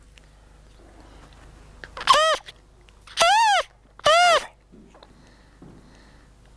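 Handmade shepherd's pipe (flauta de capolla) of pine wood, with a reed of bull-horn slivers bound over a small iron tube, blown in three short notes about a second apart. Each note rises and then falls in pitch. This is the first trial of the new reed: it already makes a sound, but no tune yet.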